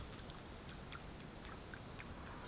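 Faint background noise with a few soft ticks.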